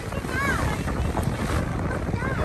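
Wind buffeting the microphone over the low rumble of a tour boat under way, with a short voice sound about half a second in.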